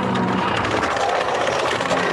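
Logo-intro sound effect: a loud, dense, noisy rush over a few low held tones.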